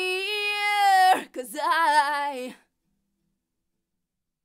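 Unaccompanied female vocal recording, played through the PreSonus ADL 700's equalizer: a long held note ends about a second in, then a short sung phrase, stopping abruptly about two and a half seconds in.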